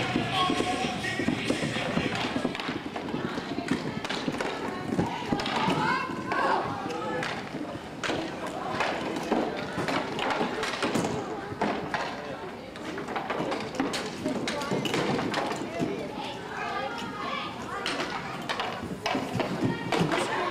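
Roller hockey game sounds: voices of players and spectators over frequent knocks and clacks of sticks, puck and skates on the rink floor.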